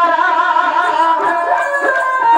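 Dhadi folk ensemble: a bowed Punjabi sarangi playing a sustained, wavering, voice-like melody over finger strokes on dhadd hourglass drums.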